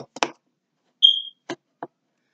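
A single short high-pitched beep about a second in, followed by two faint clicks.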